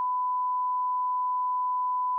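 A pure 1 kHz sine-wave test tone: one steady, unchanging pitch.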